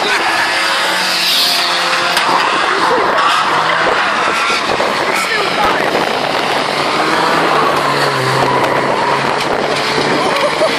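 Several old race cars running around a short oval track, their engines revving up and down, with some tyre skidding.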